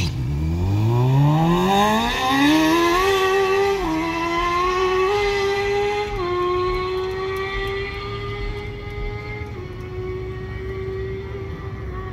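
A motor spinning up, its pitch climbing steadily for about four seconds, then running high with a few small dips in pitch and easing slightly toward the end.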